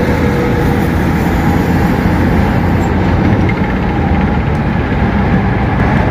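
Steady road and engine noise inside a moving car's cabin, a continuous low rumble with no breaks.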